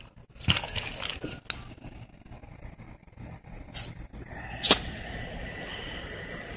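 A few scattered sharp knocks and scrapes over a low hiss, the loudest knock near the end.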